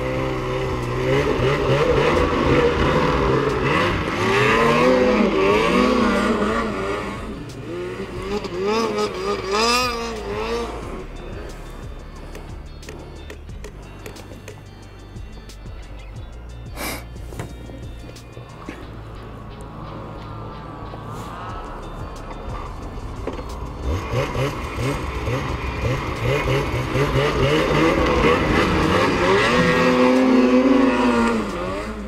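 Snowmobile engines revving up and down as a sled pulls away through deep snow. The sound is loud for the first ten seconds, then fades, and a sled revs up strongly again near the end.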